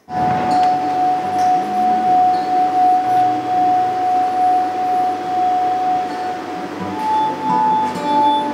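Water-filled wine glasses played by rubbing their rims: one long steady ringing tone, then a slightly higher tone near the end, with other instruments playing underneath.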